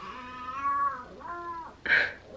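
A baby crying out twice in the background: a cry of about a second that rises and falls, then a shorter one. A brief louder burst comes right at the end.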